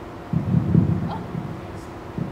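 A woman's voice speaking at the lectern, heard as choppy, muffled, low-pitched phrases starting a moment in.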